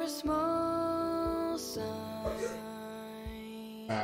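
A song with a female singer holding a long note over plucked guitar and sustained backing, with a soft low beat about once a second.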